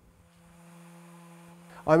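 Electric dual-action orbital sander running faintly: a steady low hum with a couple of overtones and a light hiss. Narration starts again at the very end.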